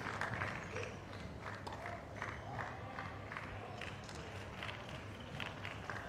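Scattered clapping from a small tennis crowd, thinning out into a few separate claps over a low crowd murmur as the applause for the set dies away.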